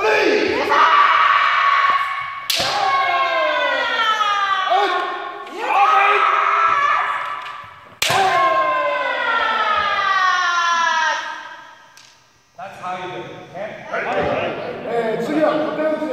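Kendo kiai: long, loud shouted yells that fall in pitch as each one is held, with the sharp crack of a bamboo shinai strike about two and a half seconds in and again about eight seconds in.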